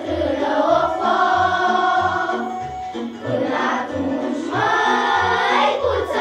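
Children's choir singing in unison with long held notes, over a backing track with a steady bass beat.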